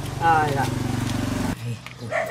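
An engine running steadily, a low hum with a rapid pulse, which stops suddenly about one and a half seconds in. A brief voice sounds near the start.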